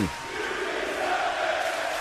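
Steady background noise with no speech: an even hiss and hum that stays level throughout.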